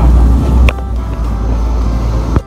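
Loud low rumble of outdoor background noise. A sharp click comes under a second in, after which the rumble drops markedly in level.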